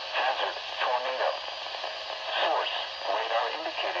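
A voice reading a tornado warning over NOAA Weather Radio through a Midland weather alert radio's small speaker, sounding thin and tinny with little bass.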